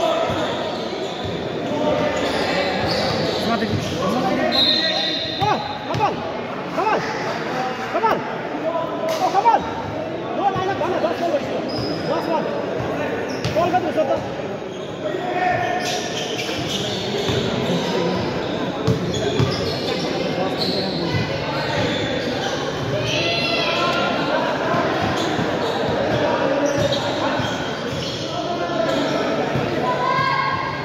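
Basketballs bouncing on an indoor court, echoing in a large hall, over steady chatter of players and spectators.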